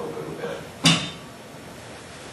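A single sharp knock about a second in as the reading stand on stage is moved or bumped.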